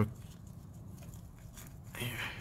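A single sharp click, then a faint low hum with a few small ticks as a gloved hand rocks an oily connecting rod and its cap on the crankshaft journal, testing the rod bearing's play.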